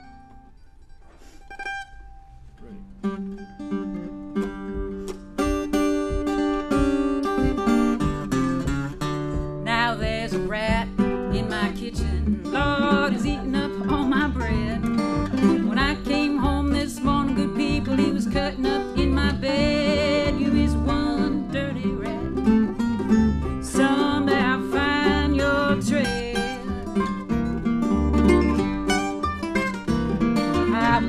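Acoustic string band of guitar, upright bass and mandolin playing an old-time swing tune. It starts softly with sparse plucked notes, the bass joins about three seconds in, and the full band plays louder from about ten seconds in.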